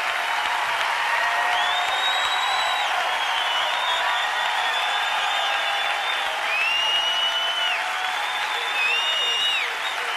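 A large theatre audience applauding and cheering, with long high whistles rising and falling through the clapping.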